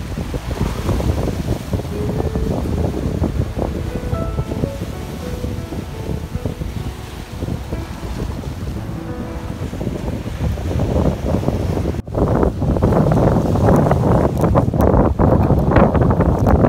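Soft background music with held melodic notes over the wash of waves on a rocky shore; about twelve seconds in, the music cuts off abruptly and louder wind buffets the microphone over the surf.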